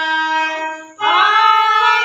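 Harmonium holding notes that fade almost away just before a second in, then a woman's voice comes in singing a kirtan line, sliding up in pitch, over the harmonium's renewed held notes.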